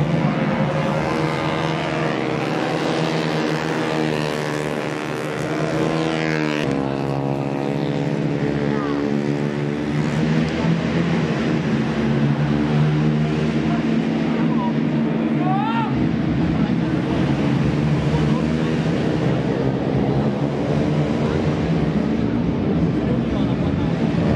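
Several small racing motorcycle engines running hard around a circuit, their pitch rising and falling as the bikes rev, shift and pass by.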